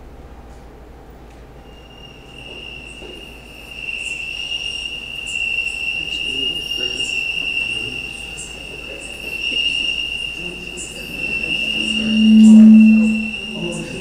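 Recording of a cricket's high, steady trill played from a phone held up to a microphone, starting about two seconds in. Near the end a brief, loud low hum rises over it.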